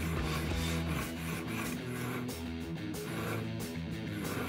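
Steel blade of a Spyderco Pacific Salt knife stroked repeatedly across the unglazed foot ring of a ceramic coffee mug, a coarse rasping scrape that is removing metal. Guitar background music plays throughout.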